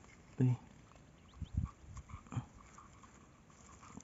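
A brief spoken syllable, then a few faint low thumps spread over the next two seconds.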